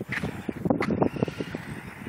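Team Associated T4 RC stadium truck with a brushless motor driving on a dirt slope at a distance, its faint high motor sound under wind buffeting the microphone in irregular crackly gusts.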